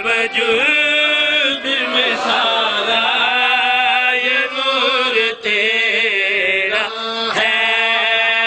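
A group of men chanting a devotional verse together in one long melodic line, held notes gliding slowly up and down with no break.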